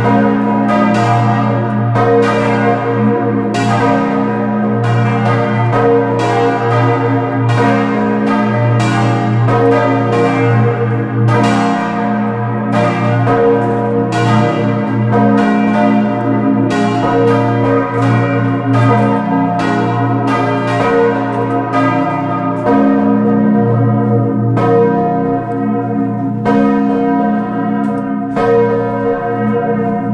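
Full peal of large bronze church bells cast by Cavadini in 1931, four of the five bells swinging with the great bell dominant. Their clapper strokes fall in an irregular, overlapping stream over a sustained low ringing.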